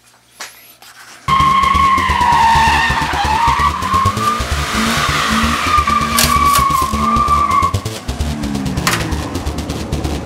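Car drifting: a long, wavering tyre squeal over the running engine, starting suddenly about a second in and fading near the end.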